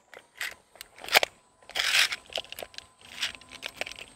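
Handling noises from a chili pepper and a pocket tape measure being readied to measure it: scattered sharp clicks, a short rasping burst about halfway through, then more small clicks and rustles.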